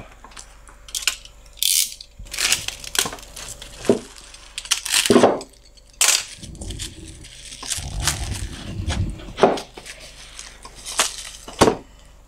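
Clear plastic stretch wrap being torn and pulled off a stack of black walnut boards, in irregular crackling, crinkling rips. The wooden boards knock and slide as they are shifted, with a duller rumbling stretch around the middle.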